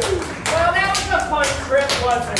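Excited voices calling out without words, with a few scattered, irregular hand claps.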